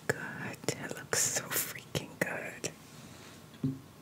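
A woman whispering close to a condenser microphone, with short sharp clicks between the whispered words; the whispering fades toward the end.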